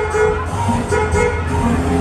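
Loud fairground music from the Discotrain ride's sound system, a melody with a horn-like tone over a steady low hum.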